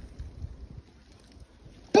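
Faint, uneven low rumble of wind buffeting the microphone, with a man's voice cutting in just before the end.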